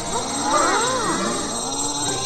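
A crowd of high-pitched cartoon Minion voices crying out together in many overlapping rising-and-falling calls over a music backing track.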